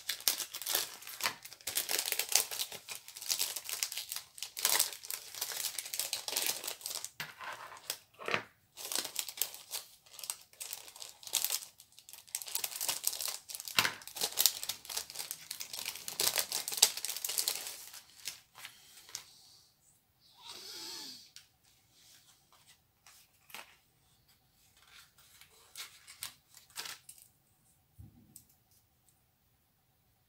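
Clear plastic packet crinkling and crackling as it is handled and opened, dense for about the first eighteen seconds, then only occasional soft rustles.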